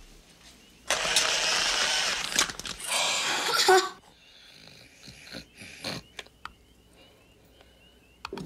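Monster-creature sound effect of slurping and gulping from a can of cat food: a loud, noisy slurp of about two seconds, then a shorter one that ends in a falling grunt.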